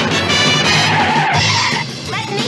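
Car tyres squealing briefly about a second in as the car takes a bend, over a dramatic chase music score.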